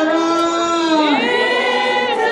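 A group of older women singing together. They hold one long note that slides down about a second in, then start the next phrase.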